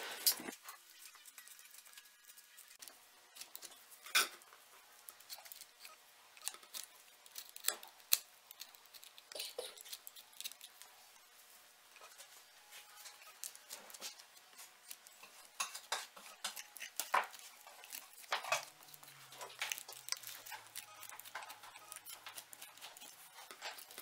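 Utility knife cutting through a deer's nose cartilage close to the bone: faint, irregular clicks and scrapes of the blade on cartilage and bone.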